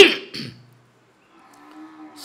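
A man clearing his throat close to a microphone: a loud, sudden, harsh burst at the start and a shorter second one about half a second later, then a faint held vocal tone near the end.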